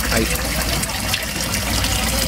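Steady rush of moving water in a koi tank, over a constant low hum.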